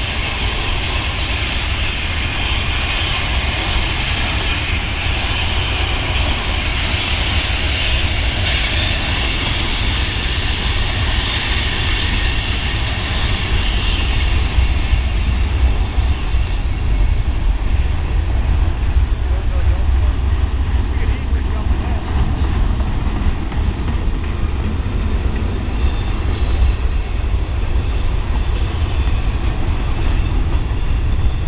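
Freight train cars rolling past close by: a steady, loud rumble of steel wheels on rail with a heavy low rumble underneath.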